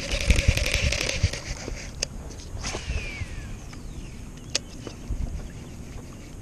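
A baitcasting rod and reel handled in a plastic fishing kayak. There is a brief hissing rush with a steady hum over the first second and a half, then scattered sharp clicks and knocks. A short falling whistle comes near the middle.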